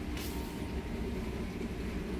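Steady low rumble of supermarket room noise, ventilation and distant activity, with a brief hiss about a quarter second in.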